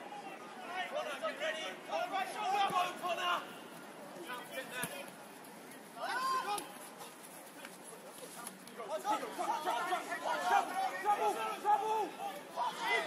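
Indistinct voices chattering and calling out, with a lull around the middle and busier talk near the end.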